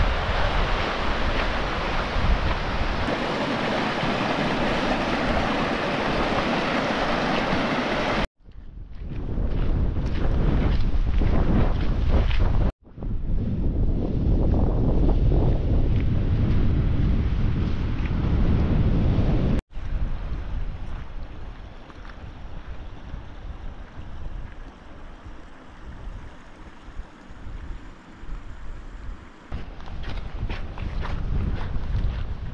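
Wind buffeting the camera microphone over the rushing hiss of a mountain stream. The sound cuts off abruptly three times as the clips change, and the last stretch is quieter and gusty.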